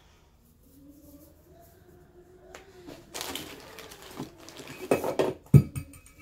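Rustling and scuffing of a knit Kevlar cut-resistant glove being handled and pulled onto a hand, with a few sharp clicks and knocks, the loudest about five and a half seconds in.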